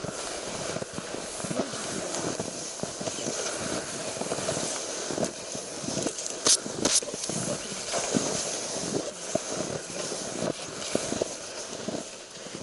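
Footsteps crunching in snow as a person walks, in an uneven run of short crackles with rustling, and two sharp clicks a little past the middle.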